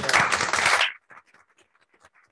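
A brief burst of applause from a small room audience that cuts off suddenly after about a second. Faint scattered knocks and rustles follow as chairs and things on the table are moved.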